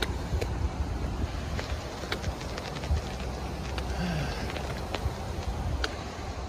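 Steady rushing noise of a whitewater river running below, with a rumbling low end and scattered faint clicks.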